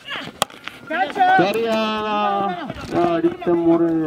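A sharp crack of a cricket bat striking a tennis ball about half a second in. It is followed by a voice calling out loudly in long, drawn-out notes.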